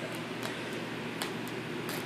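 Two dogs tugging a plush toy between them: no growls, only a low steady hiss with a few faint soft ticks.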